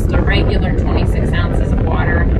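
A woman talking inside a car's cabin over a steady low rumble of road and engine noise from the car being driven.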